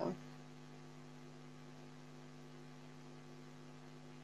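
Faint, steady electrical mains hum: a few even low tones held without change.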